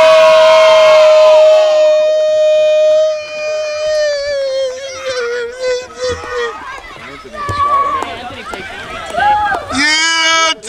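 A horn held for several seconds, signalling the end of play: one steady tone that sags slowly in pitch and dies away about six seconds in. Shouting voices follow near the end.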